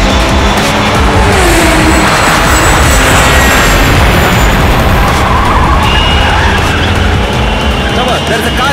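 Film action soundtrack: an SUV's engine racing with tyres squealing, mixed under loud background music.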